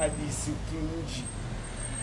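Steady low background rumble under quieter talk from a man's voice.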